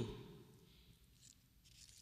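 Near silence in a pause of speech: faint room tone with a few soft, faint rustles.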